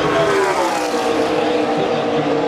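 A pack of NASCAR Cup stock cars' V8 engines passing at racing speed, their pitch falling steadily as the field goes by.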